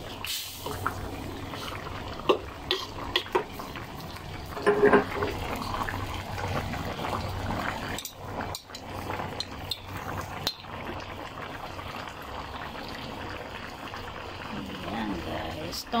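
Tom yam broth with a fish head bubbling at a simmer in a metal wok. A spoon stirs it, clinking against the wok several times in the first few seconds.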